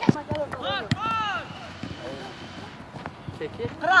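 Shouted calls of players and a coach during a youth football game on the pitch: a man yells "Kral!" at the start and again near the end, with higher-pitched calls between, about a second in. A few short sharp thuds fall among the shouts in the first second.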